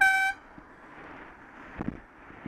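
A horn sounds one short, loud toot at a single pitch, cutting off after about a third of a second, as a car overtakes very close. Road and wind noise run underneath, with a couple of low knocks near the end.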